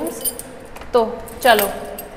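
A bunch of keys jangling and clicking against a door lock as a key is worked in it; the lock won't open.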